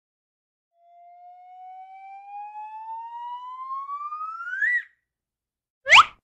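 A whistle-like tone rising slowly and steadily in pitch and growing louder for about four seconds, then cutting off suddenly. Just before the end comes a short, sharp upward zip.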